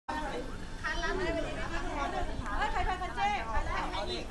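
Young women chatting in a group, several voices talking over one another.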